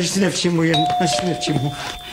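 A doorbell chime rings about two-thirds of a second in: two steady held notes, the second a little lower and starting just after the first, both ringing on together.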